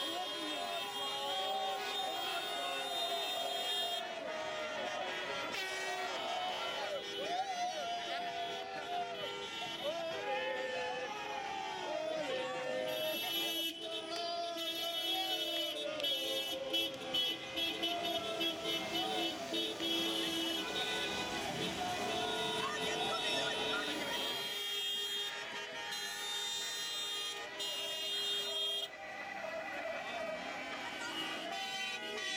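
Many car horns honking, some held for long blasts and others tooting in short bursts, over a crowd shouting and cheering: celebratory honking at a street celebration.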